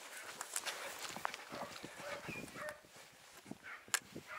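Dachshunds giving a few short, faint yips as they run, with footsteps and light clicks close by.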